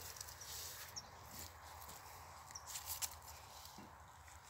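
Faint rustling and scuffing as a banana seedling is handled and set down into its planting hole in loose, ashy soil. There are a few brief scuffs about a second in and again around three seconds, over a quiet rural background.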